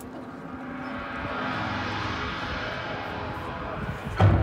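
A rushing, whooshing noise swells for about two seconds and then fades: a sound effect within a marching band's show, heard from the stands between a held chord and the band's next loud entrance, which hits at the very end.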